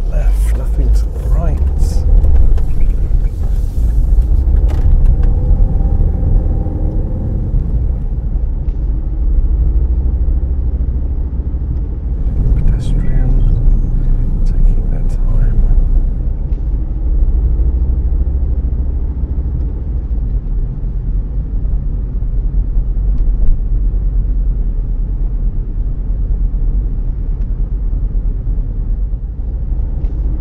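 Car interior while driving: a continuous low engine and road rumble. The engine note shifts up and down, mostly in the first several seconds, with scattered short clicks over it.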